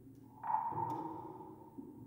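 Quiet, sparse contemporary chamber music: a soft, high sustained tone enters about half a second in and slowly fades over low held notes, with a faint click just after it.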